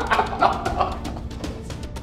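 Two men laughing heartily, with the laughter dying away over the first second, over background music with soft percussive beats.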